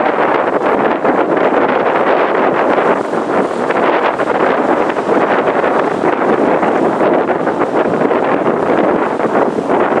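Steady rushing of wind blowing across the microphone by the sea, with small constant flutters.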